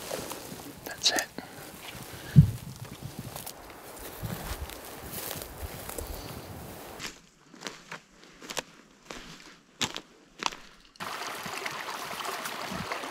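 Footsteps and rustling of brush on a forest floor while walking in the dark, with one heavy thump about two and a half seconds in and a few sharp clicks and rustles later. In the last second a steady rush of running creek water starts.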